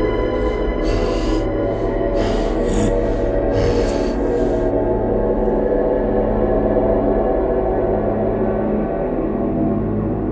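Eerie horror-film background score: a sustained drone of steady held tones, overlaid in the first half by about six short hissing bursts.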